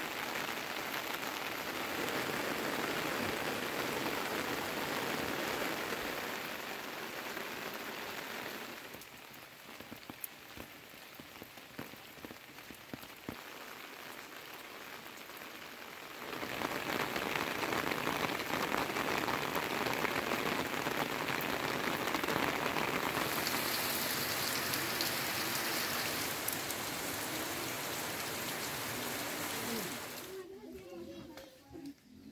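Steady rain falling, a constant hiss that drops to a quieter patter for several seconds in the middle, then comes back stronger.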